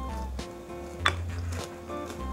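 A wooden spoon clacking against a dish of cereal in milk: two short knocks, the second about a second in and the louder, over soft background music with held notes.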